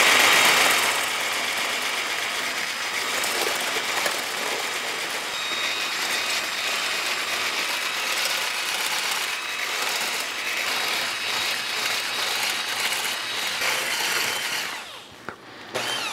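Hand-held electric whisk running steadily, its wire whisk whirring against a ceramic bowl as oil is beaten into egg yolk to emulsify a mayonnaise. It stops about a second before the end.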